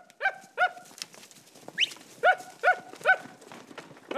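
A dog barking in two quick runs of three short barks, with a short rising yelp between them.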